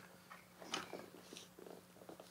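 Faint handling noise: a few light ticks and rustles from the softbox fabric and its metal support rod being worked into the speed ring, over a low steady hum.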